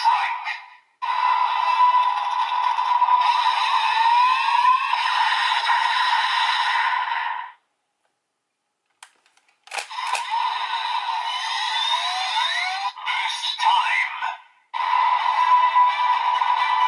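DX Dooms Geats Raise Buckle toy playing electronic music and voice sound effects through its small built-in speaker, thin with no bass. The sound stops for about two seconds just past the middle, a click comes, and it starts again.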